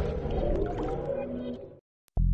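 Reverberant tail of a channel intro music sting fading out, dying to silence near the end.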